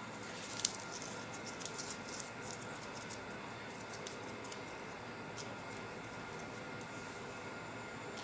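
Paper being crumpled by hand: scattered soft crackles, most in the first couple of seconds, with one sharper click just under a second in, over a steady background hiss.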